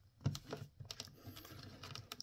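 Light, scattered plastic clicks and taps as hands handle and pose a Black Series action figure, its plastic joints and parts knocking against fingers.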